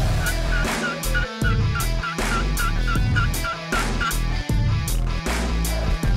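A quick, evenly spaced run of about a dozen turkey yelps in the first two seconds, over background music with a steady beat.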